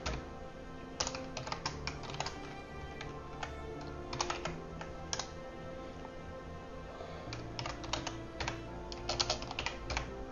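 Computer keyboard typing in scattered bursts of keystrokes, with quiet background music underneath.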